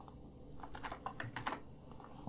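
Typing on a computer keyboard: a faint, quick run of short key clicks, most of them in the second half.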